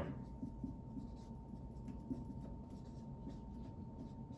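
Dry-erase marker writing on a whiteboard: a run of short, faint strokes as a word is written out.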